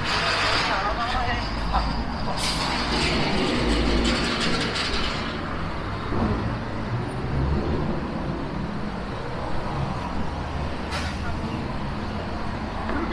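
City road traffic with buses and cars running past in a low, steady rumble, with a strong hiss that starts sharply about two and a half seconds in and fades by about five seconds, and a shorter one near the end. Passersby's voices mix in.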